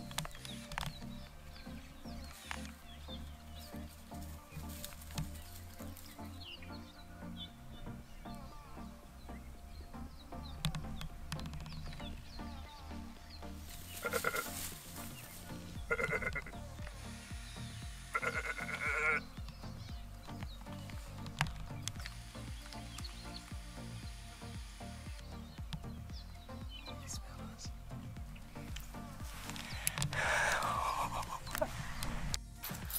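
Wild sheep bleating, a few short calls close together around the middle, over steady background music.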